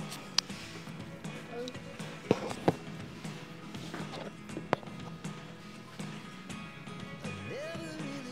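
Background music playing softly, broken by four sharp clicks or taps, the two loudest close together a little over two seconds in.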